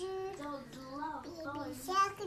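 A young child singing a wavering tune in drawn-out notes that slide up and down in pitch, with a brief louder sound right at the end.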